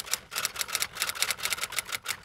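Typewriter sound effect: a quick run of key clicks, several a second, as text is typed out.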